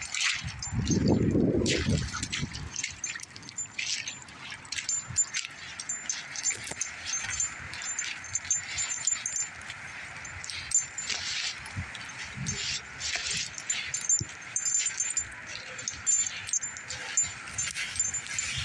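Footsteps and the rustle of brush as someone walks through wet scrub, with a low rumble about a second in. A high, pulsing chirp runs on and off in the background.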